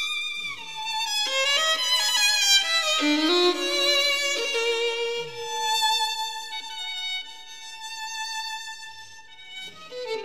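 Violin playing contemporary classical music, with vibrato and sliding glides between notes and some overlapping held notes; it grows quieter in the last few seconds.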